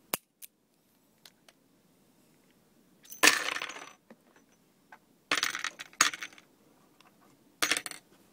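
A sharp metallic click, then three bursts of metallic clinking and rattling, each under a second long. They are typical of spent .38 Special cartridge cases being shaken out of a revolver's cylinder and landing on a hard surface.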